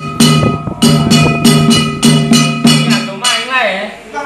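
Ritual percussion of struck metal gong and cymbals, played in a quick, uneven beat of about three strokes a second, each stroke ringing on. Near the end the strokes stop and a voice calls out with a falling pitch.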